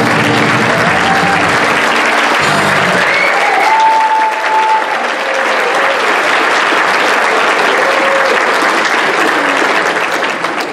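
Music ends about two and a half seconds in, and a large seated audience applauds, with a few voices calling out over the clapping.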